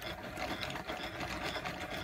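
Royal cone winder running steadily, its gearing turning as sock yarn is wound onto a cone from a spinning wooden umbrella swift.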